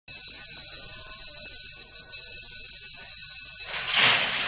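Starting-gate bell ringing steadily with a high electric ring while the horses wait in the stalls. Near the end it gives way to a loud crash as the stall doors spring open for the start.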